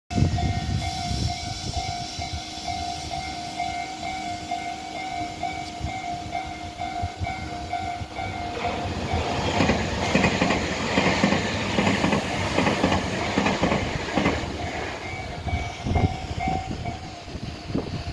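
Japanese railway level-crossing alarm ringing its repeating electronic ding, about two strokes a second. About eight and a half seconds in, an electric train runs past close by, its wheels clacking over the rail joints and drowning the bell for some six seconds. The bell is heard again near the end.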